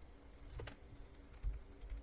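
Faint, sparse clicks from operating a computer at the desk, one sharper click about halfway through, over quiet room noise with a faint steady hum.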